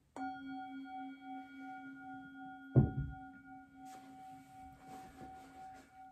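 A hand-held metal singing bowl struck once with a wooden striker, ringing on with several overtones that pulse slowly and fade; the strike marks the end of a minute of silent contemplative prayer. A short thump about three seconds in and light rustling come under the ringing.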